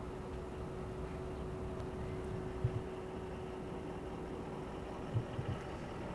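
Steady low outdoor background rumble with a faint steady hum that fades near the end, and a few faint knocks.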